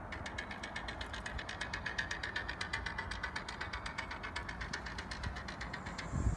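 A rapid, even ticking, about ten strokes a second, over a steady low hum, stopping near the end.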